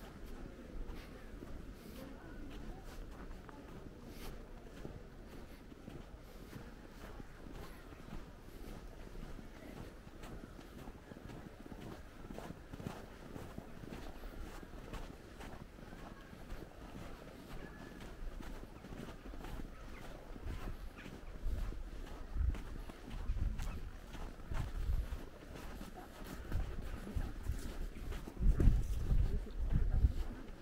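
Footsteps on packed snow, a steady run of faint crunching clicks as someone walks. Low thumps and rumble on the microphone build up in the last several seconds and are the loudest sound there.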